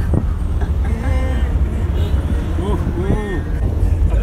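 Steady low rumble of a car driving, heard from inside the cabin, with people talking faintly over it.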